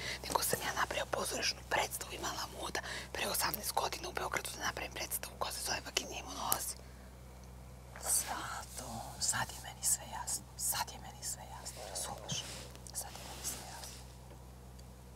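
Two women talking in whispers, with a pause of about a second midway. A steady low hum runs underneath.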